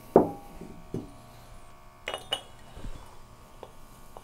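Metallic clinks and clicks of a gas regulator and hose being disconnected from a calibration gas cylinder: a sharp clink with a short ring at the start, another about a second in, and a few lighter clicks around two seconds in.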